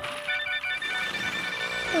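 Electronic sound effect of a spinning toy globe radio: a cluster of high, ringtone-like tones that trill rapidly at first and then hold steady as the globe turns.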